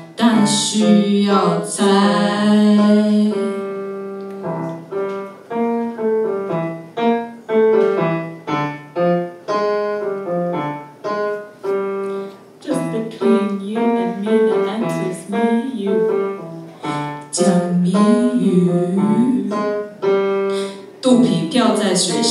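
Live song: a stage keyboard played with a piano sound, chords and melody notes, with a voice singing over it at times.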